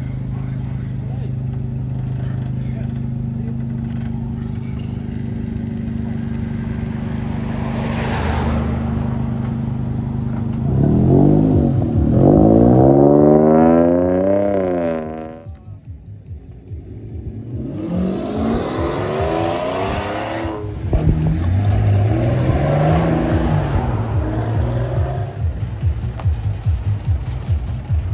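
Car engines running at low revs, then an engine revved hard in a series of quick rising-and-falling blips. This is the loudest part, about eleven to fifteen seconds in. After a brief lull, more rev blips follow, slightly weaker.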